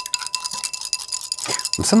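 A metal spoon stirring a muddy mix of water, sand, clay and cocoa powder in a glass beaker, clinking rapidly against the glass.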